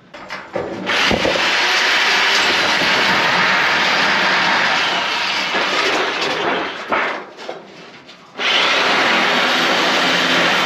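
Handheld power tool cutting through a ribbed metal roofing panel: a loud, steady cutting noise that starts about a second in, breaks off briefly around seven seconds, and starts again at about eight and a half seconds.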